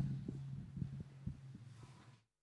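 Irregular dull thumps of footsteps and handling carried through a live handheld microphone as it is walked across a stage, over a steady low electrical hum.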